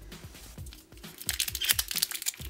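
Foil blind-bag wrappers crinkling as they are handled and pulled out of small plastic toy backpacks, starting about halfway through, over quiet background music with a steady beat.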